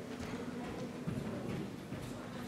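Faint, irregular small clicks and rubbing from a small object being handled close to the microphone, over a steady low hum.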